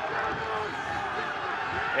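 Stadium crowd noise: a steady hubbub of many voices and shouts from spectators.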